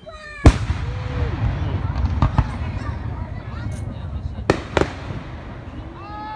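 Aerial firework shells bursting: one loud bang about half a second in, followed by a low rumble that lingers. Two smaller cracks come a little after two seconds in, then two sharp bangs close together near the end.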